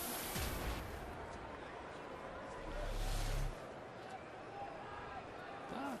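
Ballpark crowd ambience: a steady murmur of the stadium crowd, with a brief louder swell about three seconds in.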